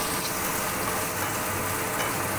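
Strips of pressed tofu (tokwa) sizzling steadily in hot oil in a frying pan as they are turned with a spatula.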